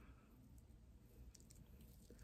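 Near silence, with a few faint clicks and squishes from a wooden comb drawn through short hair soaked with deep conditioner.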